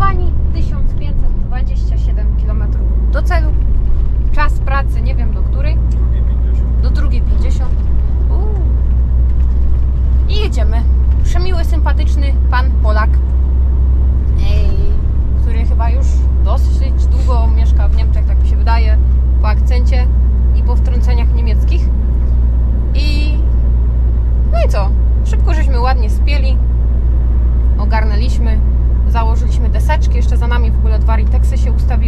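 Steady low drone of a Scania truck's engine and road noise inside the cab while driving, with a woman talking over it.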